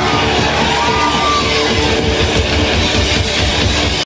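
Live punk rock band playing on loudly with electric guitars and bass, steady and dense, with no singing.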